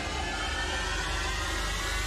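Steady rushing noise over a low hum, a dramatic tension sound effect in the reality show's soundtrack.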